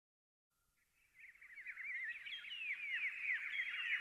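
Birds chirping: many short, overlapping, falling chirps that fade in after about a second of silence and grow louder.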